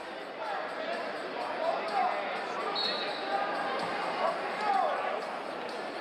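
Ambience of a large arena during a wrestling match: voices calling out across the hall over a steady hum, with scattered dull thuds, typical of bodies and feet hitting the mats.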